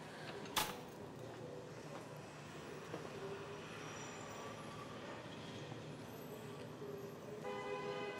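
Soft background score of quiet held tones over low room ambience, with a single sharp click about half a second in.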